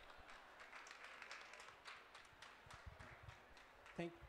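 Faint, scattered clapping from a small audience, a ragged run of separate claps.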